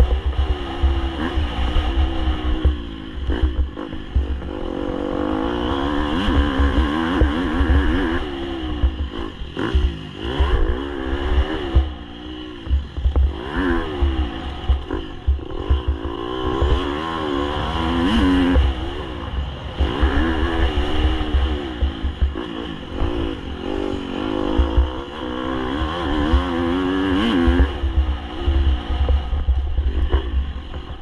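Dirt bike engine ridden hard on dirt, its revs climbing and dropping again and again as the rider accelerates, shifts and backs off through corners.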